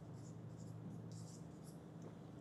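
Marker pen writing on a whiteboard: faint, short scratchy strokes in quick succession.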